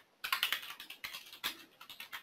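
Computer keyboard typing: a quick run of keystrokes starting about a quarter second in, then single keystrokes spaced out.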